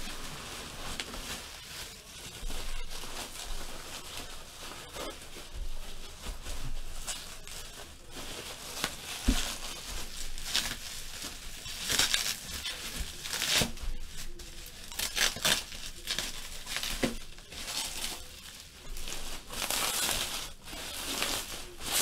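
Plastic bubble wrap crinkling and rustling as it is handled and pulled off a wrapped item, with sharp crackles coming and going irregularly.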